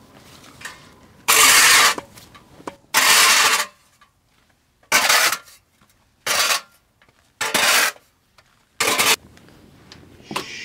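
A metal-bladed snow shovel scraping across snow-covered concrete: six harsh strokes, each under a second long, the first two the longest and loudest.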